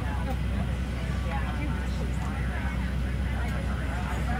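Parked airliner cabin: a steady low hum with the indistinct chatter of boarding passengers over it.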